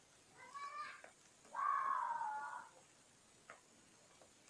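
Two drawn-out vocal calls: a short one about half a second in, then a louder one lasting about a second with its pitch falling slightly.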